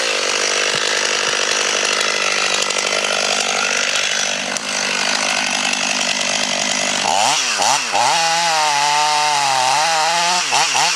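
Stihl MS 500i fuel-injected two-stroke chainsaw running with a ticking idle for about seven seconds. It then revs up and down repeatedly as it cuts into the base of a large beech trunk.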